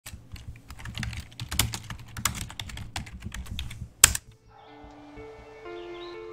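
Fast, irregular typing on a computer keyboard, the keys clicking for about four seconds and ending with one loud keystroke. Then music with long held notes fades in.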